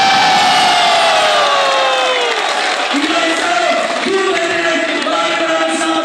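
A man's long drawn-out shout through a microphone and PA, sliding down in pitch over about two and a half seconds, over crowd noise; then a man talking or chanting through the PA.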